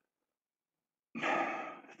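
Dead silence for about a second, then a man sighs once, a single breath that fades away.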